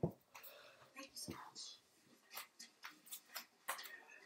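A knock against a tabletop, the loudest sound, followed about a second later by a softer second knock, then a run of short, light clicks and taps as objects are handled.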